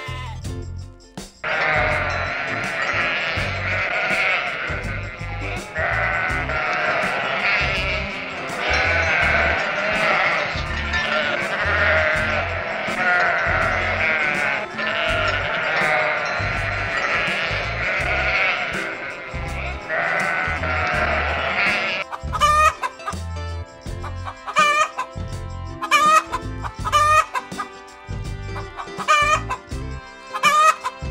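A flock of sheep bleating over one another, many voices at once. About two-thirds of the way in, this gives way to chickens clucking and calling in short, sharp, repeated calls, with a rooster among them.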